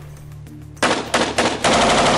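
Belt-fed machine gun firing: rapid shots begin about a second in and run into a longer continuous burst near the end.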